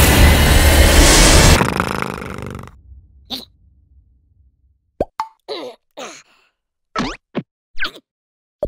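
Cartoon sound effects: a loud, noisy dramatic effect that fades away over the first two and a half seconds, then after a near-silent gap a string of short plops and squeaky blips.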